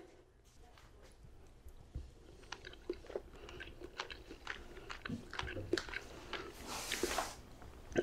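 A man eating a mouthful close to the microphone: faint chewing with scattered small clicks, and a short hiss near the end.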